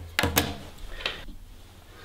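Handling sounds of an MHL adapter's micro-USB plug being pushed into a Samsung Galaxy Note 2 and the cable moved about: a few sharp clicks and knocks, the loudest in the first half-second and another about a second in.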